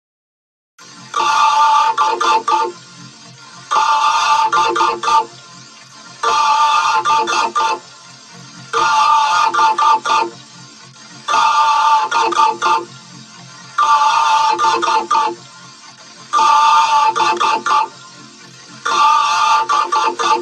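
A short electronic musical phrase with steady tones, looped over and over, starting about a second in and repeating about every two and a half seconds.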